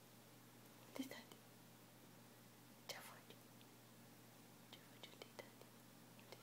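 Near silence, broken by a few short, soft whispers from a person: about a second in, near three seconds, and a small cluster near the end.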